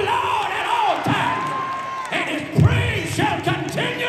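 Congregation shouting and whooping back at the preacher, several voices calling out over one another, one cry held for about a second. Hand claps and low thumps come through underneath.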